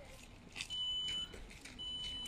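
An electronic beeper sounding a high, steady beep about half a second long, repeating about once a second, twice here.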